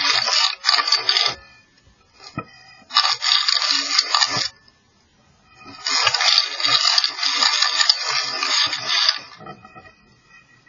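Scraping and rattling against the inside of a chimney flue, in rough bursts of one to three seconds with short quiet gaps between: about a second and a half at the start, again around the third second, and a longer stretch from about six to nine seconds.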